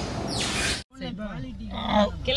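A rhythmic rushing noise, about two swishes a second, that cuts off suddenly just under a second in; then a woman and children talking and laughing inside a car.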